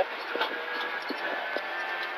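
Renault Clio Rally4's engine and road noise inside the cabin at speed: a steady hissing drone whose pitch holds constant, thin and without bass.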